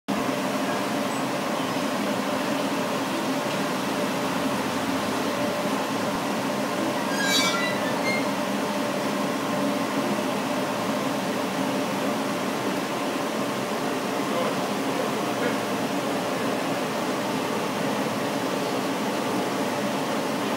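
Laser engraving machine running: a steady, fan-like hum with several held tones. A brief high-pitched chirp comes about seven seconds in.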